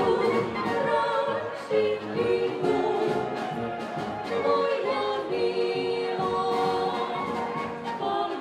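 Czech brass band (dechová hudba) playing with its singers: women's and men's voices sing together in harmony over the band, with a steady beat from the drums.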